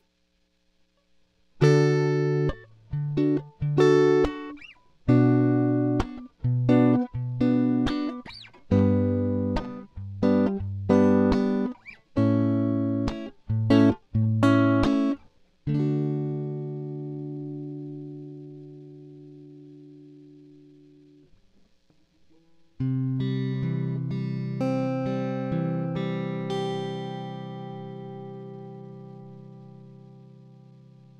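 Electric guitar (a Fender Stratocaster) tuned to Peterson's Sweetened temperament, playing a passage of short, choppy chords starting about a second and a half in. About sixteen seconds in, a chord is left to ring and fade away, and a final chord struck about 23 seconds in rings out slowly.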